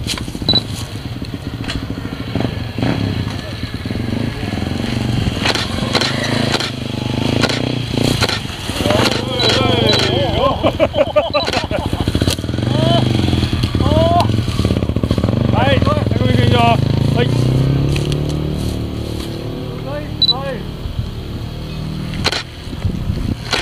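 A trials motorcycle engine running. It rises and grows stronger in the middle stretch, as if revving or coming closer, with voices calling out over it.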